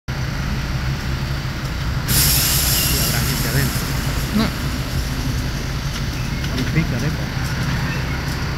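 A pickup truck engulfed in flames, the fire burning with a steady low rumble and scattered crackles. A loud hiss starts suddenly about two seconds in and fades over the next second or two.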